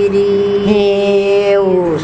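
Unaccompanied woman's voice singing a Haryanvi folk song of the rains in a long held note that glides down near the end.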